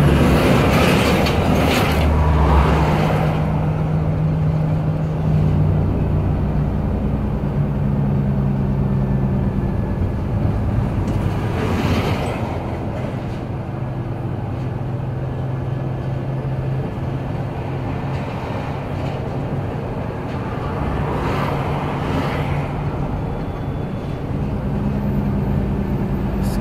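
A heavy truck's diesel engine humming steadily from inside the cab as it crawls downhill at walking pace, its pitch shifting slightly now and then. Oncoming trucks rush past three times: at the start, about 12 seconds in, and again around 21 to 23 seconds.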